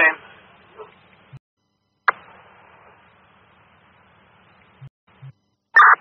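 Scanner radio on a fire-dispatch channel between transmissions: the tail of one message, then faint radio hiss that cuts out to silence, returns with a sharp click about two seconds in, and cuts out again before the next voice comes in near the end.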